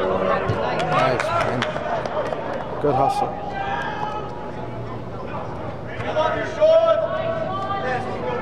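Players' shouts and calls during an indoor soccer game under an air-supported dome, loudest about three seconds in and again near the end, with a few sharp knocks like a ball being kicked.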